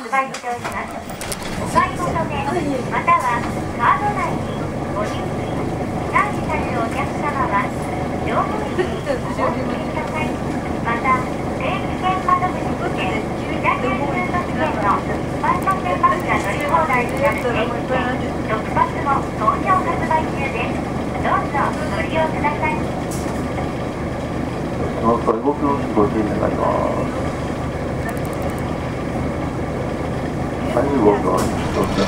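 People talking inside a 1992 Nissan Diesel U-UA440LSN city bus, over the steady hum of the bus's diesel engine idling while the bus stands at a stop.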